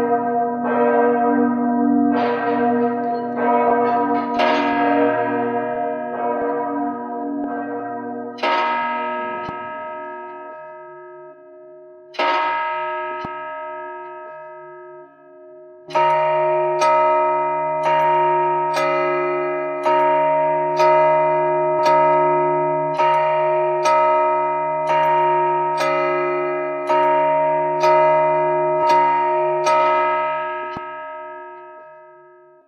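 Large bronze tower bell of Venice's clock tower, struck by a hammer and left to ring on in long, slowly fading tones. At first a few strikes come several seconds apart; from about halfway the strikes come steadily, about one a second.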